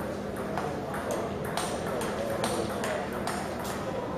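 Table tennis ball struck back and forth in a fast rally, its sharp clicks off the paddles and table coming about two to three a second, over a murmur of spectators' voices.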